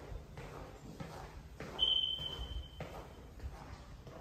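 Footsteps walking on a wooden floor, with a single high squeak lasting about a second a little before the middle.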